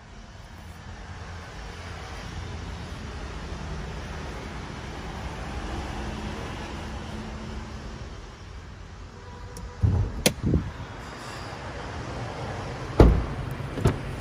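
Steady low hum with handling noise, then a few sharp knocks about ten seconds in and one heavy thump about thirteen seconds in: a car door of a Hyundai Accent being shut.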